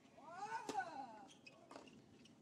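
A tennis player grunts on his serve on a clay court: a drawn-out cry that rises and then falls in pitch, with the sharp crack of the racket striking the ball about two-thirds of a second in. A fainter knock follows about a second later.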